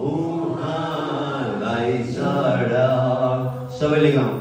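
A man singing slow, long-held notes in a chant-like melody, with a short break near the end before the next phrase begins.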